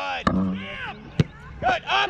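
Raised voices of people shouting across an outdoor soccer field, with two sharp knocks about a second apart, the first just after the start.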